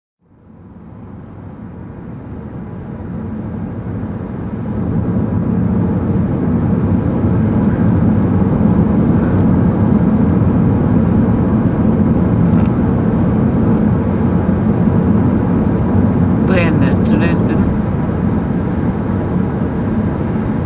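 Road noise inside a moving car's cabin: a steady low rumble of tyres and engine at road speed, growing louder over the first five seconds and then holding. A brief voice is heard a few seconds before the end.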